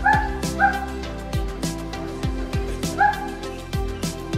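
Background music with a steady beat, over which a dog, an Old English Sheepdog, gives three short high barks: two in the first second and one about three seconds in.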